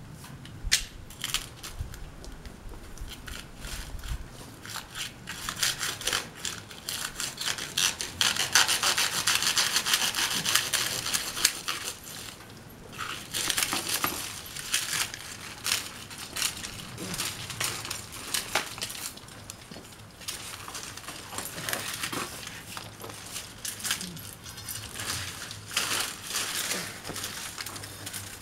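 Pole saw sawing back and forth through the fibrous seed stalk of a Trachycarpus wagnerianus palm. The strokes come in quick runs, thickest and loudest from about six to twelve seconds in.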